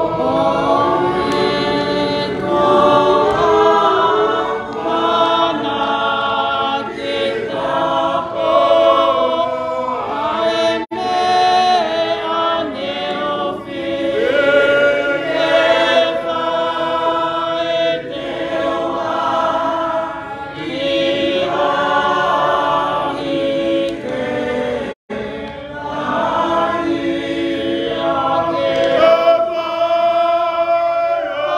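A group of voices singing a hymn together in several parts, with long held notes. The sound briefly cuts out for an instant about 25 seconds in.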